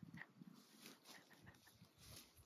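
Very faint sniffing and snuffling of a cow with its muzzle up close, with a few small soft clicks.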